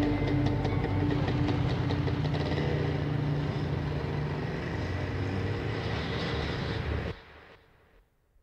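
Dense rumbling noise closing the track, slowly getting quieter, then cut off abruptly about seven seconds in and trailing away to silence.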